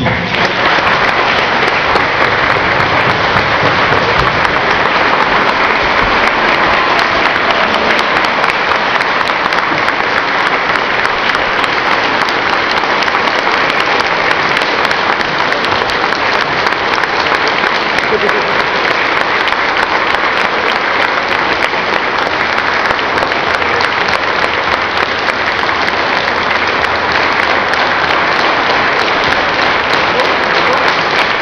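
An audience applauding steadily and at length, many hands clapping at once in a dense, even patter, as a welcome for a speaker who has just been introduced.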